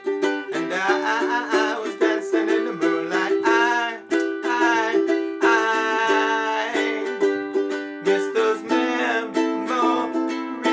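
A ukulele strummed in steady, rhythmic chords in G major, with a man singing a drawn-out, wavering vocal line over it.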